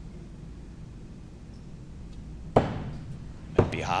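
Two throwing axes striking wooden board targets about a second apart, each a sharp thud with a short ring-off.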